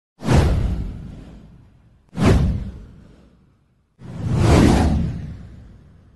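Three whoosh sound effects from an animated title card. The first two start suddenly about two seconds apart and fade away; the third swells in and fades out near the end.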